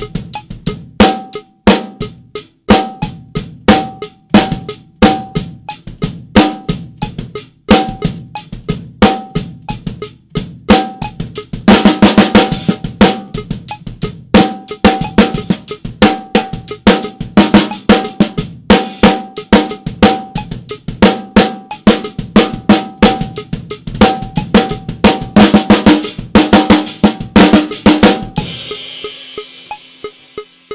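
Acoustic drum kit played in a steady groove of bass drum, snare and hi-hat, an accent exercise spread across the kit's pieces. From about twelve seconds in a cymbal wash thickens the sound. Near the end the playing stops and a cymbal rings out.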